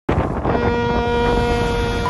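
Wind on the microphone and water noise from a boat running fast across the harbour. Over it, a steady pitched tone is held for about a second and a half.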